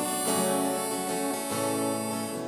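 Acoustic guitars strumming a chord accompaniment, steady ringing chords with a few fresh strums.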